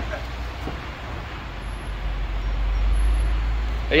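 Diesel fuel pump running as it dispenses into a truck's tank: a steady low hum with a rushing haze over it, growing a little louder after the first second.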